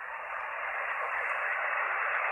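Steady hiss of band noise from an Icom IC-R75 shortwave receiver in single-sideband (LSB) mode on the 80-metre band, heard through its narrow voice passband while no station is transmitting. It grows slowly louder through the gap.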